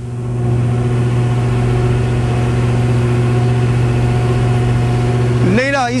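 A sea-cleaning boat's engine running steadily at idle: a low, even hum that does not change. A man's voice starts over it near the end.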